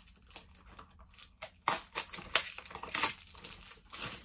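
Plastic packaging crinkling and tearing as a small boxed item is unwrapped by hand: an irregular run of crackles, busiest in the middle, with the wrapping clinging to the hands.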